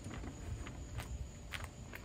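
A few light footsteps on pavement, about half a second apart, over a low background rumble.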